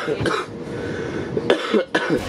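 A man coughing, with a sharp cough about one and a half seconds in.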